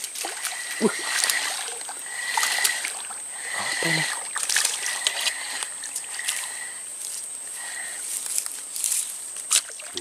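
A hooked small featherback (putak) splashing and thrashing at the surface of a pond as it is reeled in, in short irregular bursts.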